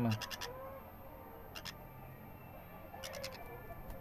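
Green-cheeked conure chick making three short bursts of rapid clicking chatter, spaced about a second and a half apart.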